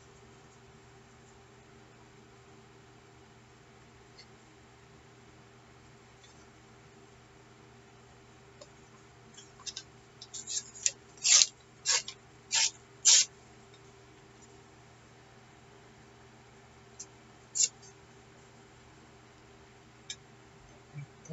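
Loose pieces of paper being handled: a run of short, crisp rustles about halfway through, the loudest four about half a second apart, and one more near the end, over a faint steady hum.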